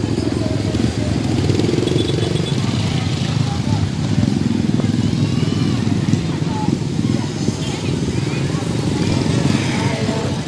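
Motorcycle engines running close by amid the chatter of a crowd.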